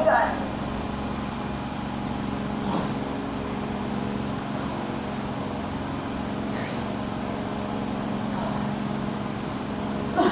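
Steady low machine hum, like a fan or air conditioner, with brief faint voice sounds at the start and twice more later on.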